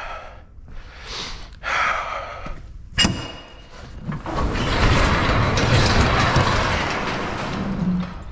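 Sectional overhead garage door: a sharp clunk about three seconds in, then the door rolling up along its metal tracks as one long, even, noisy run of about three and a half seconds.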